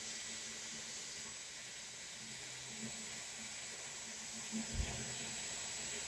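Faint, steady airflow hiss from a hot-air hair styling wand running, with a soft low bump about five seconds in.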